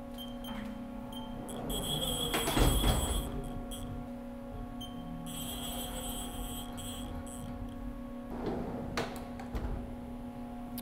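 Haas CNC vertical mill's axes being moved with the handle jog wheel: two stretches of high servo whine, about two and five seconds in, over a steady machine hum, with a few dull knocks.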